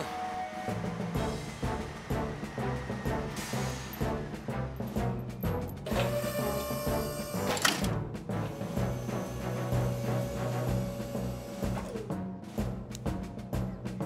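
Dramatic cartoon background music with low, steady bass notes and a quick run of timpani-like drum strokes. A short noisy sound effect sits in the music from about six seconds in until nearly eight seconds.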